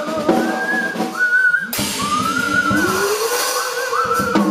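Free-improvised vocal duet with drum kit: high, wavering, whistle-like vocal lines and a lower voice gliding slowly upward, over scattered drum and cymbal hits with a cymbal crash a little under two seconds in.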